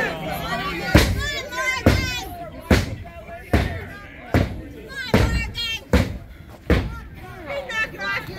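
A run of about eight sharp impacts, a little under a second apart, with voices shouting between them. These are a wrestler's repeated strikes landing on his opponent in the ring.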